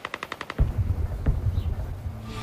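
A rapid burst of distant machine-gun fire, about eleven rounds a second, stopping about half a second in, followed at once by a deep rumble with a few heavier thuds, the sound of far-off battle.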